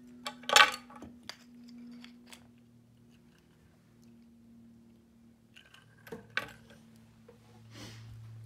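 Plastic and wooden toy-car pieces clicking and clattering as they are handled and fitted together, with a sharp clatter about half a second in, a few lighter clicks, and another clatter around six seconds.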